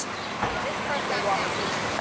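Street ambience: road traffic noise, with faint voices in the background.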